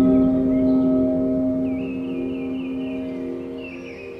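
Ambient meditation music: a low, bell-like chord struck just before the start rings on as steady tones and slowly fades, with a faint wavering high tone above it in the second half.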